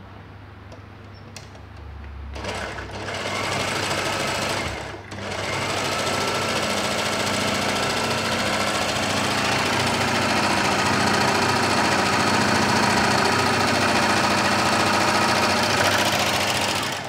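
Brother overlocker (serger) stitching a fine rolled-hem edge on a test strip of fabric. It starts about two seconds in, stops briefly near five seconds, then runs steadily.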